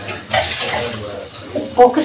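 Water running from a kitchen tap into a sink, a steady rushing hiss, followed near the end by a short clatter of metal kitchenware.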